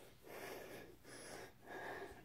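Faint breathing close to the microphone, three soft breaths in and out.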